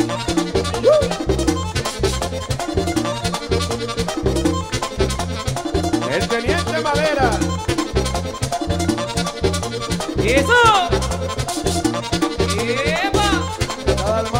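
Merengue típico band playing an instrumental passage: accordion runs over a steady, driving bass and percussion rhythm.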